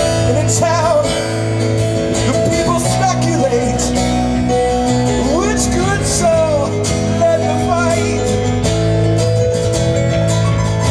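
A live band plays a song with acoustic guitar, electric bass and keyboards under a lead line of sliding, bending notes. It is heard from among the audience.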